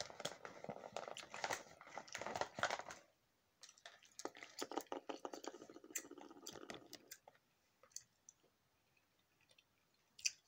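Fingertips rubbing and tapping close over a phone's microphone, miming the blending-out of concealer: about three seconds of dense crackling, a brief pause, a second stretch of crackles, then a few scattered faint ticks.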